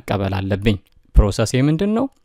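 Speech only: a voice narrating in Amharic, with a short pause a little under a second in.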